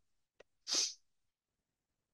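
A faint mouth click, then a short, sharp breath from the presenter into his microphone, under a second in.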